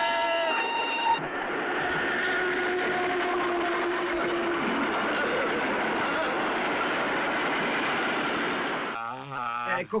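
A train horn sounds briefly at the start, then a train passes over the rails with a steady, even noise lasting about eight seconds.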